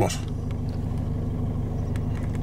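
A car's engine and running gear giving a steady low hum, heard from inside the cabin as the car rolls slowly.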